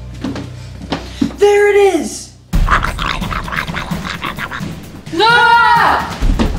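Footsteps over a low, eerie music drone, then two loud screams. One is held for about half a second a second and a half in; the other rises and falls just before the end.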